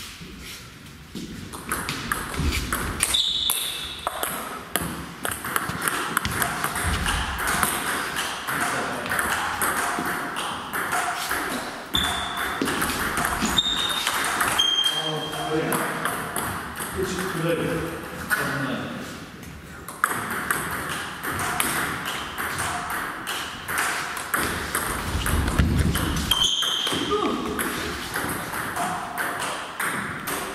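Table tennis ball struck back and forth in rallies: a quick run of sharp pings and clicks off the bats and the table, with a short pause between points.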